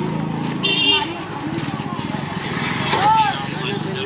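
Busy street crowd: many passers-by talking at once, with a motor vehicle passing by about two to three seconds in.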